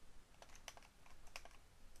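A handful of faint, scattered clicks from a computer keyboard and mouse, over quiet room tone.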